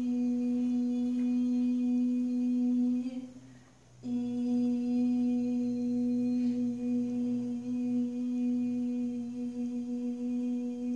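A person humming one long steady note. It trails off about three seconds in for a breath, comes back on the same pitch a second later, and holds with a slight waver.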